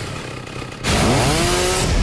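A chainsaw starts up loudly almost a second in and revs, its pitch rising and then holding at full speed. Before it there is a quieter, noisy stretch.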